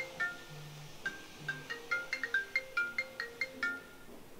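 Smartphone ringtone playing a quick marimba-like melody of short, bright notes, stopping shortly before the end as the call is picked up.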